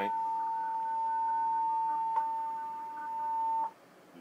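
A steady electronic tone of about 1 kHz, with a fainter higher tone above it, from the satellite receiver rack. A single click comes about two seconds in, and the tone cuts off suddenly shortly before the end.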